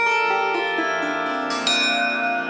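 Instrumental music: notes on an Indian string instrument ringing over a steady drone, with a fresh note struck about one and a half seconds in.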